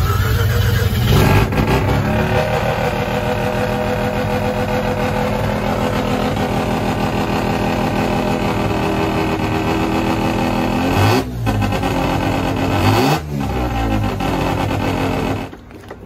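Van engine running at a raised idle, revved about a second in and blipped twice near the end, while it is checked for whether the alternator charges: the gauge shows the battery at only 10.6 V at about 2,000 rpm, so it is not charging. The sound drops off sharply just before the end.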